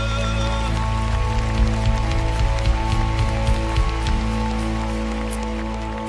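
A worship band holding a sustained closing chord as the song ends, with the congregation applauding over it. The last sung note fades in the first second, and the clapping dies down near the end.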